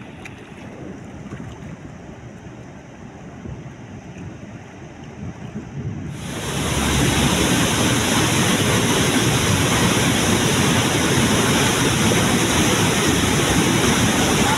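Water being released through a dam's radial sluice gate. For the first six seconds there is a softer rush of water with wind on the microphone. About six seconds in it jumps to a loud, steady roar of water gushing out under the gate.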